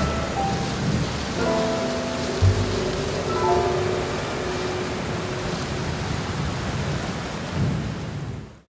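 Recorded rain and thunder: a steady hiss of rain with a low thunder rumble a few seconds in. Soft held musical notes sound over it in the first half.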